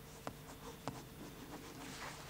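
Pen writing on paper as a signature is put on a document: faint, scattered short scratches.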